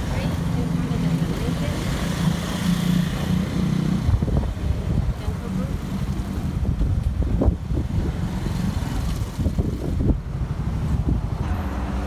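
Town street noise: a motor vehicle engine running nearby with a steady low hum, a few short knocks, and voices in the background.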